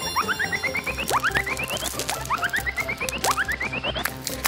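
A playful cartoon sound effect that plays twice: a quick run of short chirps stepping upward in pitch, then a fast rising whistle-like sweep.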